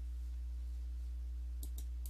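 Steady low electrical hum on the recording, with two faint clicks close together near the end.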